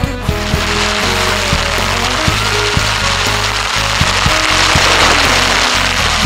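Background music with a steady drumbeat and held notes, with a loud hiss that swells under it and is loudest near the end.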